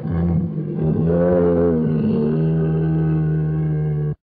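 A brown bear's long, low roar, held steadily through the whole stretch with a slight waver in pitch in the middle.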